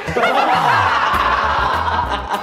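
Several young people laughing together, with background music underneath.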